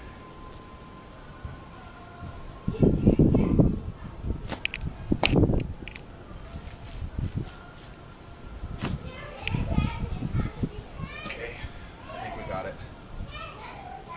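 A garden spade driven into cold clay soil and levered to lift a clump of lamb's ear: three loud, dull strokes about three, five and ten seconds in. Children's voices in the background.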